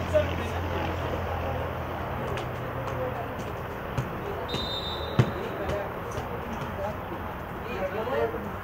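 Football match stoppage: distant voices of players and spectators over a steady low hum that fades about halfway. A short, high referee's whistle sounds just after halfway, followed at once by a sharp thud of a ball being kicked, the loudest sound here.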